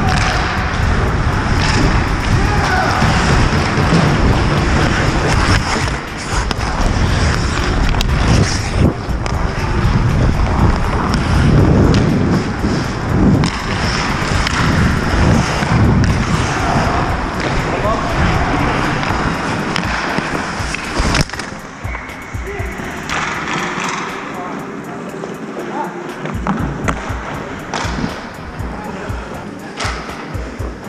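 Ice hockey skates scraping and carving on the ice during play, heard from a helmet-mounted camera with wind rumbling on the microphone and players' voices calling. The rumble eases about two-thirds of the way through.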